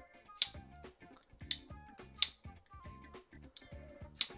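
A roller-bearing folding knife being flipped open and shut, giving three sharp clicks about a second apart, over soft background music.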